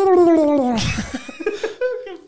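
A man's vocal imitation of a turkey gobble: a call that slides down in pitch over about a second, then breaks into a rougher burst.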